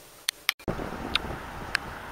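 Two sharp clicks, then a sudden change to outdoor sound: wind on the microphone over a low traffic rumble, with three light, evenly spaced footsteps on pavement at a walking pace.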